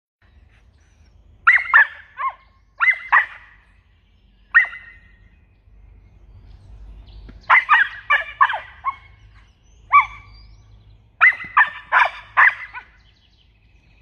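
Australian cattle dog puppy barking in high-pitched yaps, in short bursts of one to several barks with pauses between, as alert barking during protection training.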